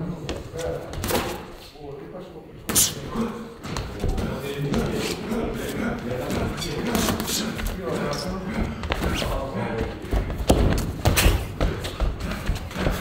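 Boxing gloves landing punches during sparring: a series of sharp thuds, several close together near the end, over background music.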